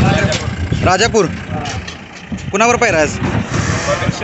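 Voices speaking over a steady low rumble, most likely a vehicle engine.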